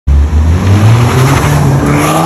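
Loud exhaust note of a Skoda Octavia 1.8 turbo four-cylinder accelerating, its pitch rising in steps. The exhaust is tuned: the resonator was removed, a bass muffler fitted, and a Helmholtz resonator added against cabin drone.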